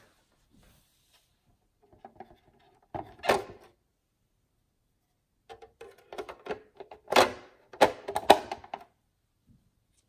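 Hard plastic parts of a water filter pitcher knocking and clicking as the clear plastic filter reservoir is lifted and set back into the pitcher: a couple of knocks about three seconds in, then a run of clicks and knocks in the second half, the sharpest near the end.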